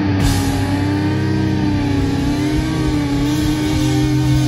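A heavy metal band playing live. Distorted electric guitars hold long sustained notes, the strongest one wavering slightly in pitch, over a steady low note that changes pitch near the end.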